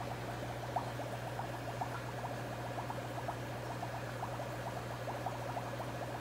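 Aquarium air pump humming steadily while air bubbles into a tub of water, a fast, irregular patter of small pops.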